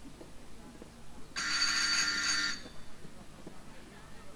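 An electric bell-like ringing tone, loud and steady, sounds for a little over a second starting about a second in, then cuts off suddenly.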